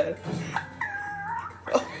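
A short, high-pitched whine held for about two thirds of a second, dipping slightly in pitch and then rising at its end.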